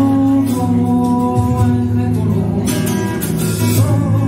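Live Andalusian rock band playing: strummed acoustic guitar, electric bass and hand percussion on cajón, with a voice singing held notes.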